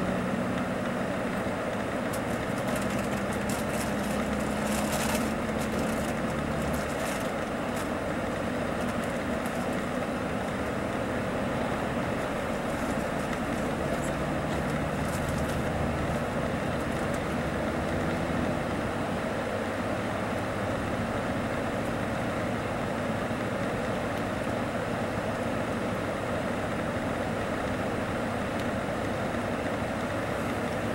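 Mercedes-Benz O-500RSDD double-decker coach cruising on the highway, heard from inside: a steady engine hum with tyre and road noise. The engine note rises a little in the first few seconds, with light rattles in the cabin shortly after.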